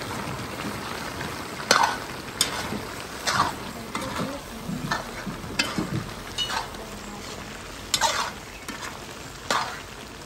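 Long metal spoon scraping and stirring goat tripe massalé in a large aluminium pot, in short strokes about once a second. The food sizzles underneath.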